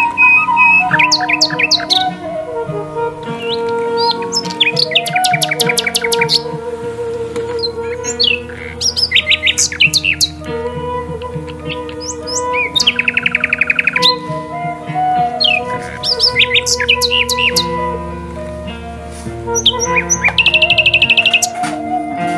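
Background music of held, sustained chords with bird chirps and rapid twittering trills laid over it, coming and going every few seconds.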